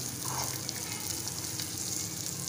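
Almonds, peanuts and raisins sizzling in ghee in a metal pan, stirred with a spoon; a steady frying hiss.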